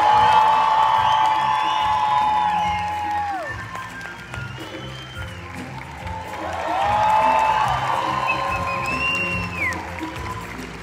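Live theatre orchestra and cast singing at a stage musical's curtain call, with voices holding two long notes, the first for about three seconds and the second near the end. Audience applause and cheering run underneath.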